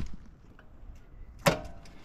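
A single sharp click about one and a half seconds in, followed by a brief ringing tone, against a quiet background.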